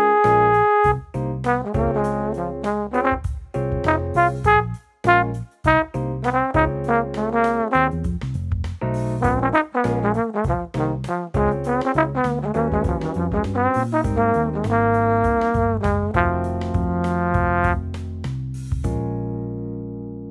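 Tenor trombone (Bach 36) playing an improvised jazz blues chorus: quick phrases built on the A-flat major pentatonic scale with a flat third, full of scooped and bent notes, with short breaks between phrases. Near the end the phrases give way to longer held notes that fade out.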